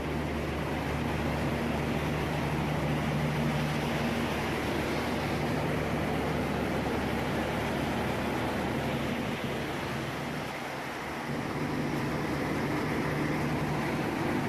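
Steady drone of drilling-rig machinery: a low, even-pitched hum under a wide hiss of machine noise, thinning briefly a little after ten seconds in.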